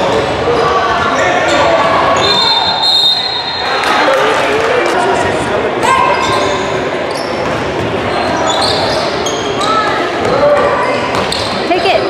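Live basketball game in a large echoing gym: the ball bouncing on the hardwood, sneakers giving short high squeaks on the court, and players and spectators calling out.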